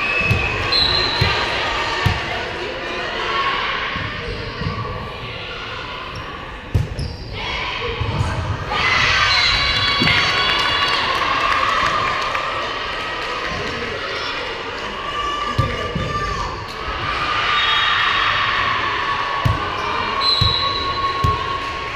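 Volleyball game in a gym: dull thuds of the ball being bounced and struck on the hardwood court, under players calling out and spectators cheering. The voices swell about nine seconds in and again near the end.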